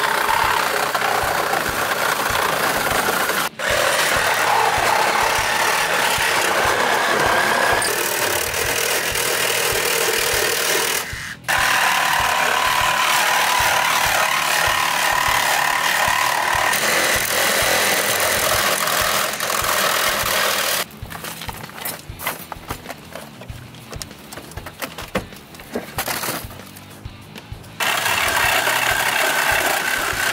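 Reciprocating saw cutting through a car's rear deck panel, running in long loud bursts. It stops briefly twice, early on and about a third of the way in. About two-thirds through it falls quieter for several seconds with scattered knocks and rattles, then cuts again near the end.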